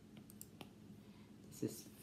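Stylus tapping and clicking on a tablet screen while writing, a few faint clicks in the first second. A short vocal sound near the end.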